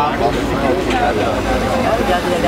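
Motorboat engine running with a steady low rumble as the boat moves along the canal, under people's voices.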